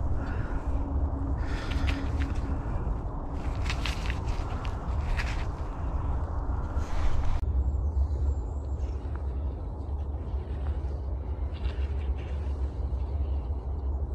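Steady low outdoor rumble with a few brief rustling noises in the first half. The higher sounds drop away abruptly about seven seconds in, leaving mostly the low rumble.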